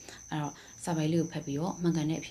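A person speaking in short phrases, with a pause just after the start. Under the voice runs a steady, high-pitched pulsing chirp.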